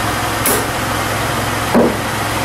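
Suction-cup dent puller on a car's front fender: a short, sharp pop near the end as the dent pulls out, over a steady background hum. A brief high hiss comes about half a second in.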